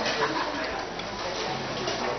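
Indistinct murmur of a seated crowd talking quietly, over a steady background hiss, with faint light clicks.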